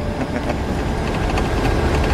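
Cab noise of a military convoy vehicle driving on an unpaved desert road: steady low engine and road rumble, with faint rapid clicks and rattles in the first second or so.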